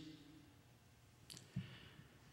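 Near silence: room tone with a couple of faint clicks, one a little past the middle and a soft low knock just after it.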